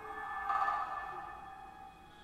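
Live electroacoustic ensemble music: a cluster of sustained, ringing pitched tones that swells about half a second in and then slowly fades away.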